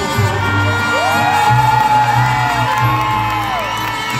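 Live mariachi band playing a ranchera in an arena, with sustained held notes over a steady low accompaniment, while the crowd cheers and whoops.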